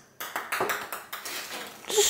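A run of irregular light clicks and crinkles from a bagged tea package being handled and turned in the hand.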